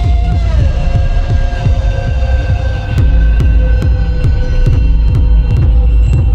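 Electronic dance music played in a live DJ mix: a heavy pulsing bass under held synth tones that slide down in pitch near the start, with sharp percussive ticks coming in about halfway.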